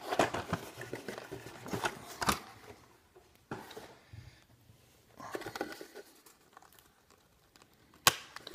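Cardboard box and plastic packaging handled and pulled apart to free trading cards: crinkling and tearing in several short bursts with a few sharp clicks, separated by quiet pauses and dying away over the last couple of seconds.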